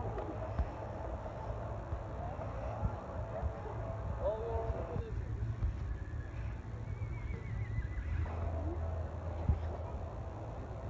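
Outdoor fairground ambience: a steady low rumble with faint, distant voices of people talking.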